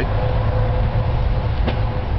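Ford F250 pickup's CNG-fueled engine idling: a steady low rumble with a faint steady whine, and a single sharp click near the end.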